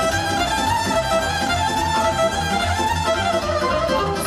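Live Romanian sârbă dance music from a wedding band: a fast, busy lead melody over a steady pulsing bass beat.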